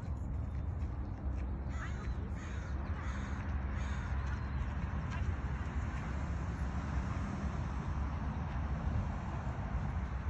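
A bird calling several times in quick succession, about two to four seconds in, over a steady low rumble.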